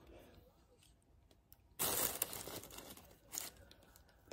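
Tissue paper rustling and crinkling as it is handled, in a louder burst about two seconds in that fades over a second, and a short one near the end.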